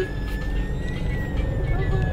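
Car engine running, a steady low rumble heard from inside the cabin.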